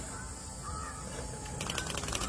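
A bird calling three short times over a low steady outdoor background, with a rapid clicking rattle starting about a second and a half in.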